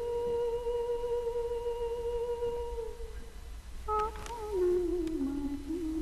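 A woman's voice humming a slow melody: one long held note for about three seconds, then after a short gap a phrase that steps down through held lower notes.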